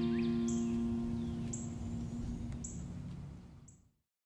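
Final strummed chord of a steel-string acoustic guitar ringing out and slowly dying away, with faint bird chirps in the background. The sound fades and cuts off to silence just before the end.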